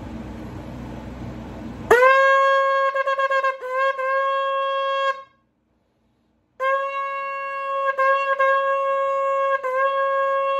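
A 13-inch full natural Jericho shofar blown in two long blasts on one steady, bright note. The first starts about two seconds in and wavers briefly before breaking off; the second follows after a short silence.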